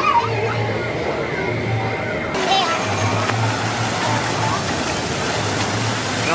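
Amusement-park ambience of voices and music, then after about two seconds a change to a fountain's falling water splashing steadily under scattered voices.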